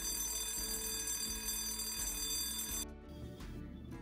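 Electric school bell ringing steadily, the signal that class is starting, cutting off suddenly about three seconds in. Background music runs underneath.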